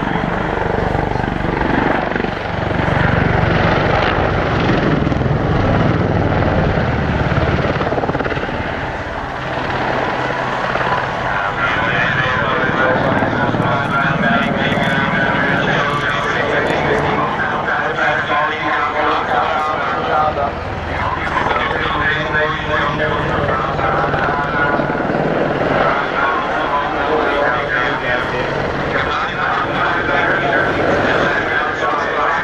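AH-64D Apache attack helicopter in display flight: the beat of its main rotor and the run of its twin turboshaft engines, strongest in the first eight seconds or so, then easing off as talking comes over it.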